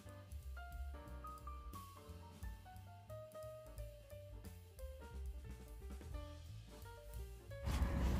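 Background music: a light melody of single held notes, partly stepping downward, over a steady bass and drum beat. Just before the end it gives way to a sudden, louder rush of wind on the microphone.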